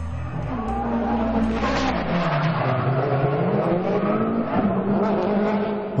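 Drift car engine at high revs, its pitch dipping about two seconds in and climbing again, with the tyres squealing as the car slides.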